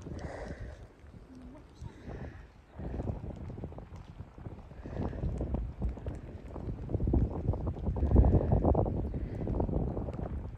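Wind buffeting the microphone in gusts, a low rumbling rush that swells to its loudest about eight seconds in.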